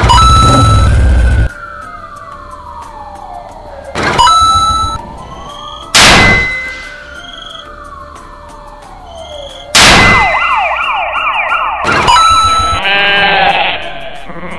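Added sound effects: a slow wailing siren falls and rises over several seconds, then a fast yelping police-car siren takes over about ten seconds in. Sudden loud hits mark each change. A goat bleats near the end, after a low rumble at the very start.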